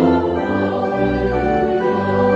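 Church organ playing a hymn in slow, held chords over a bass line that moves about once a second.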